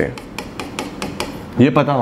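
Stylus tapping on the glass of an interactive display while marks are written: a quick run of light taps, several in the space of about a second.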